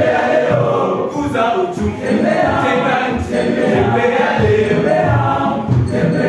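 A secondary school choir singing a choral song, several voices sounding together throughout.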